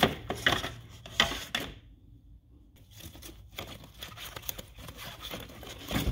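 Plastic engine-bay trim panel and its sound-deadening pad being pulled free by a gloved hand: irregular plastic clicks and knocks with rustling, a short pause about two seconds in, then more scattered handling.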